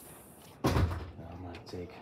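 A single sudden heavy thump just over half a second in, dying away within about half a second.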